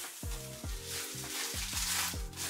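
Plastic wrapping crinkling as a packed item is handled and unwrapped, over background music with a steady beat.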